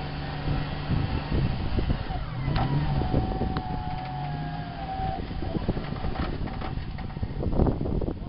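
A stuck 4x4's engine running under load while it is winched out of a muddy rut: a steady low engine note, with a higher whine from the winch that rises and holds for a couple of seconds in the middle.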